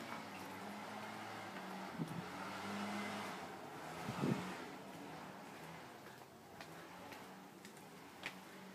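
Low steady mechanical hum under a rushing noise that swells towards the middle and fades, with a soft knock about two seconds in and a louder one about four seconds in.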